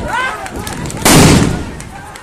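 A single loud blast from a crude bomb about a second in: a sharp crack that dies away over about half a second, after voices shouting.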